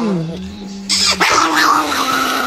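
Chihuahua growling steadily, then about a second in breaking into loud snarling and barking.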